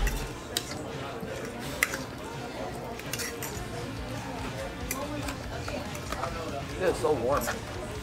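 Metal forks clinking and scraping against ceramic dinner plates in fast eating, a few sharp clinks standing out over a steady murmur of background voices and music.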